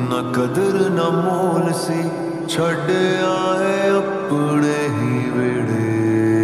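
Slowed-down, reverb-heavy Bollywood pop ballad: sustained chords under a drawn-out, wavering vocal line, with no clear words.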